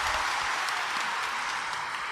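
Congregation applauding, a dense patter of many hands, starting to die down near the end.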